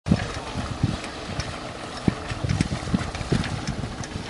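Wind buffeting an open microphone over a steady wash of water noise, with irregular low thumps.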